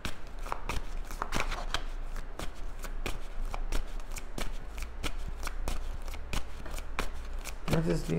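A deck of tarot cards shuffled by hand: an irregular run of short card slaps and flicks, several a second.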